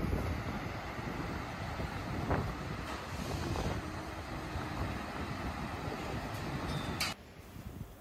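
Steady city street noise: a low rumble of traffic with some wind on the microphone. It drops away abruptly with a click about a second before the end.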